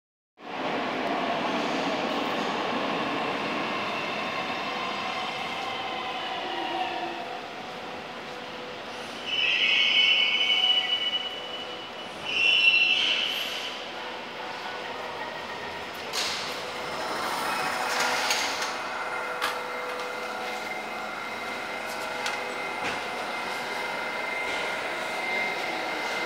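Inside a St Petersburg metro 81-722 'Yubileyny' train pulling out of a station: steady running noise with the thin whine of the traction drive. About a third of the way in come two loud, high-pitched wheel squeals a couple of seconds apart, followed by clicks of the wheels and whine tones as the train runs on.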